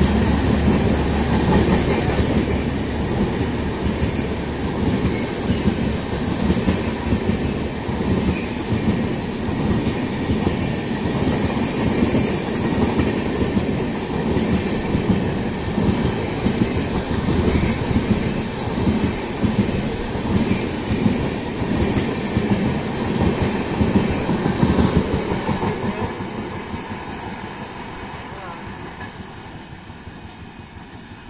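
Passenger coaches of an express train running through a station at speed without stopping: a steady rumble with rhythmic clickety-clack of wheels over the rails. It fades away over the last few seconds as the end of the train passes.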